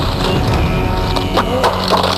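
Film sound effects for a destructive martial-arts blow: a low rumble under rapid crackling and clicking, as of rock breaking apart, mixed with the score.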